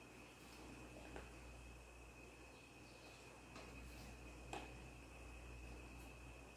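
Near silence: faint room tone with a steady thin high tone and two faint ticks, about a second in and near the end.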